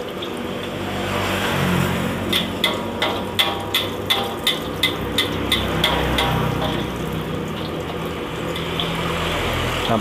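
Egg omelette frying in hot oil in a wok, a steady sizzle. In the middle of it a metal spatula clicks against the wok about three times a second.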